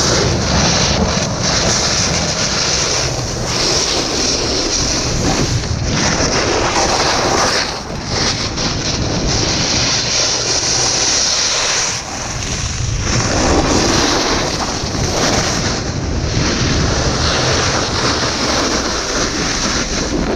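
Snowboard sliding and scraping over icy, hard-packed snow at speed, a loud steady hiss that eases briefly a couple of times, with wind buffeting the action camera's microphone.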